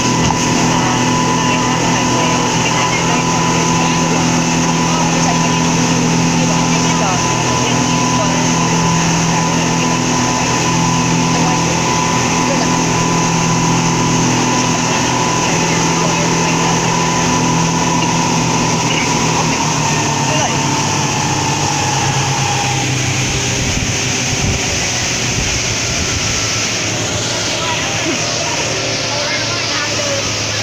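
Speedboat engine running steadily at speed, with water and wind noise, heard from inside the boat. About twenty seconds in, the engine note drops slightly.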